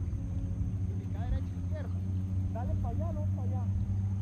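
Distant voices calling out in two short bursts, over a steady low hum.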